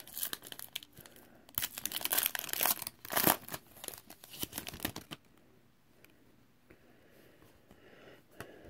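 A foil trading-card pack being torn open and its wrapper crinkled, a dense crackling for about the first five seconds, then only faint handling.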